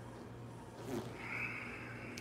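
Quiet room with a low steady hum, and faint sounds of a person moving on a yoga mat from upward-facing dog into downward-facing dog, with a soft hiss beginning a little past a second in.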